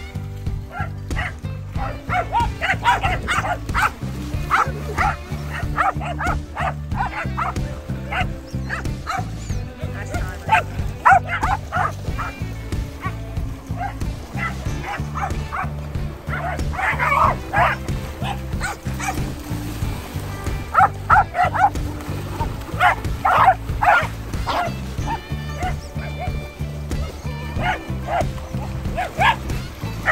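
A pack of dogs barking in repeated bursts over steady background music.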